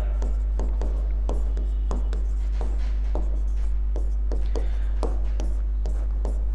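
Short taps and scrapes of a pen writing on a board, a stroke or two a second, over a steady low electrical hum.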